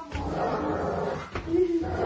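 A dog growling as it lunges and snaps at a skateboard held up as a shield, with a couple of sharp knocks of the dog hitting the board.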